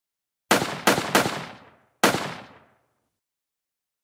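Gunshot sound effects on a channel intro: three shots in quick succession about half a second in, then a fourth a second later, each dying away in an echoing tail.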